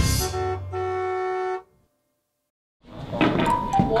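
A two-note chime, doorbell-like, a short note and then a longer held one, closing the show's cartoon intro jingle and stopping about a second and a half in. After about a second of silence, the sound of a busy room with voices comes in near the end.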